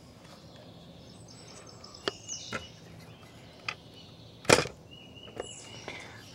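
A sharp knock about four and a half seconds in, with a few fainter clicks before it, over a quiet outdoor background.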